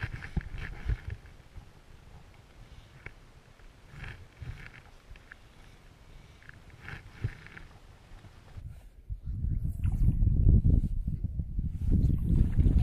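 A hooked trout being played on a fly rod: soft water splashes and the rustle of fly line being handled, with a splash at the surface near eight seconds. From about nine seconds in a loud wind rumble buffets the microphone and covers everything else.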